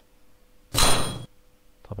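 Virtual-lab sound effect of a tuning fork being struck: one short metallic clang with a high ring, about three-quarters of a second in, lasting about half a second.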